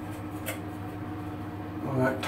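A steady low machine hum in a small tiled bathroom, with one faint click about half a second in.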